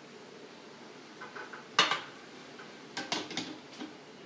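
Metal clinks and knocks of a handheld can opener and tin can being handled: a sharp click a little under two seconds in, and a short cluster of clicks about three seconds in.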